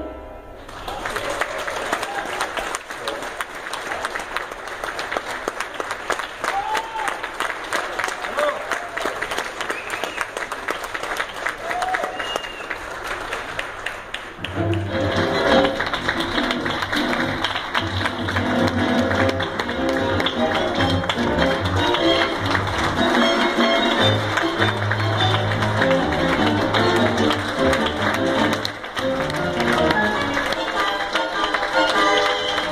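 Audience applauding with a few scattered shouts for about the first half. Then a live tango orchestra starts playing a lively piece with a strong bass line, and it carries on to the end.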